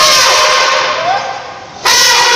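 Elephant trumpeting sound effect: a loud, sudden blast that fades over about two seconds, then a second blast starting near the end.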